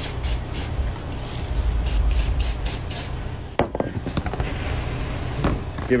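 Aerosol CA glue activator sprayed in several quick spurts, in two groups, onto fleece tape soaked with CA glue. It is a heavy dose of activator, enough to make the glue kick off hot.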